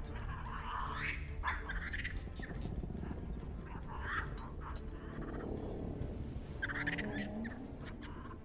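Capuchin monkey giving short, squeaky chattering calls every second or so over a low, sustained orchestral score.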